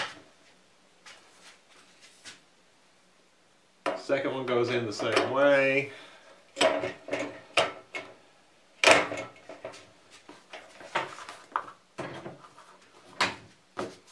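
Sharp clicks and knocks of LED tubes being pushed into the fixture's tombstone sockets, twisted to lock, and knocking against the metal fixture, a dozen or so separate clicks through the second half. A man's voice is heard briefly about four seconds in.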